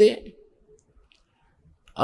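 A man's speaking voice trails off at the end of a word, then a pause of near silence with a few faint clicks.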